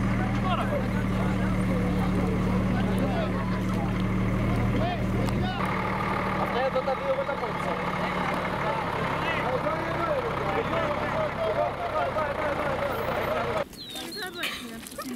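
Diesel engine of a water-tanker truck idling steadily under many people talking. The engine hum drops lower about five and a half seconds in, and the sound drops away suddenly just before the end.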